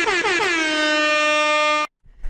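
Air horn sound effect: one long blast whose pitch wobbles and sags at first, then holds steady before cutting off sharply.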